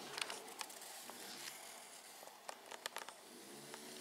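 Faint scratching of a colored pencil on paper as a child draws, with a few light ticks in the second half.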